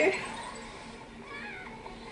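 A young child's brief, faint high-pitched vocal sound about one and a half seconds in, over a low steady room hum.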